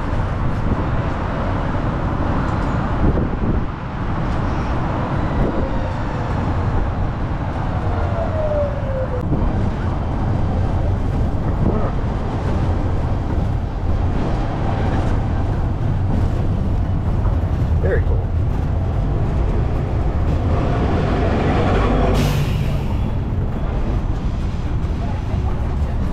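Steady low rumble of road and wind noise from the open back of a moving tuk-tuk, tyres running over city streets with traffic around. A louder rush comes near the end.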